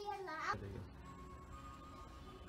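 A toddler's short, high-pitched squeal that slides up and down, ending about half a second in, then a low, steady background hum with faint steady tones.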